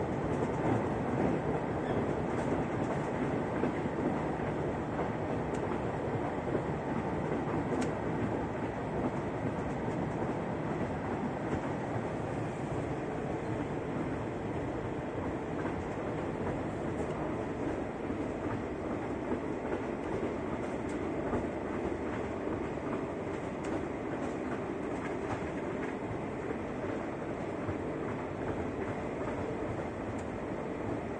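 Steady running noise of an X73500 diesel railcar under way, heard from inside the passenger cabin: wheels rolling on the rails, with a few light clicks from the track. The noise is a little louder in the first few seconds.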